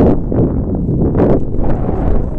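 Heavy wind buffeting the microphone, coming in repeated gusts.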